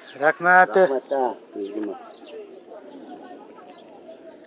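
A man's voice speaking for about the first second and a half, then a low, steady outdoor background.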